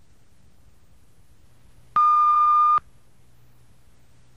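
A single electronic beep, one steady tone held for nearly a second about two seconds in, over a faint background hiss and hum.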